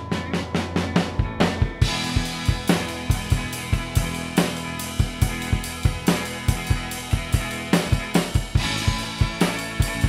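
Garage rock band's song: a drum kit with bass drum and snare building up, then the full band coming in with cymbals about two seconds in and a steady driving beat over sustained bass and guitar.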